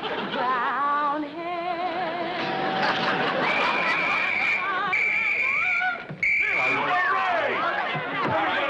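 A woman singing in a warbling voice, then a police whistle blown in three steady, high blasts. Voices break out after the last blast.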